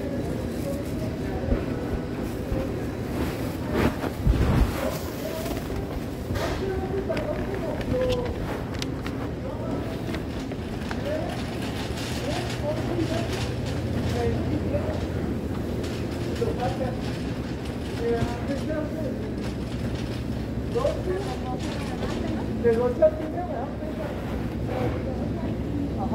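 Supermarket ambience: scattered, indistinct voices of shoppers over a steady low rumble, with a low thump about four seconds in.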